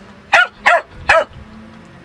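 A dachshund gives three short, sharp barks in quick succession, each rising and falling in pitch. These are play barks, made from a play bow.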